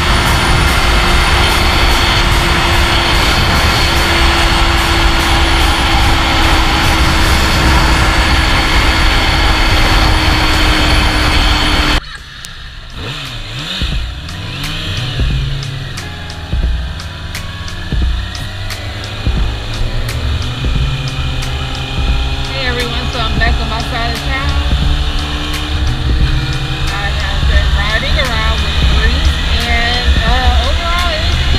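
Kawasaki ZX-6R inline-four running at freeway speed under a steady roar of wind on the microphone. About twelve seconds in, the sound drops abruptly to a quieter engine note at road speed, whose pitch rises at times as the bike accelerates.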